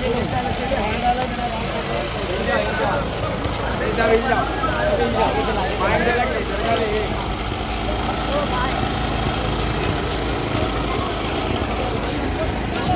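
An engine running steadily at idle, a constant low hum, with people's voices over it.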